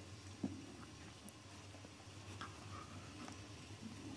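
Quiet play between an Australian Shepherd and a Brussels Griffon puppy: faint scattered ticks and soft mouthing sounds, with one sharp click about half a second in.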